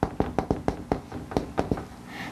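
Writing on a board: a quick, irregular run of sharp taps and clicks, about five or six a second.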